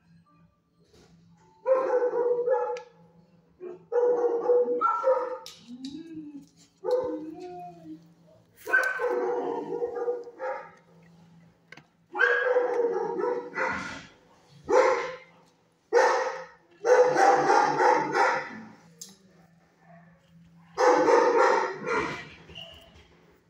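A dog barking in a kennel, in about ten loud bouts of barks with short pauses between them, over a faint steady low hum.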